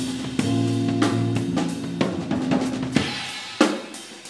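Live band playing: a drum kit keeps a beat under sustained chords, the chords dying away about three seconds in and leaving mostly drums, with a strong hit near the end.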